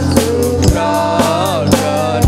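A group of voices singing a Christian hymn together, over a steady drum beat of about two strokes a second.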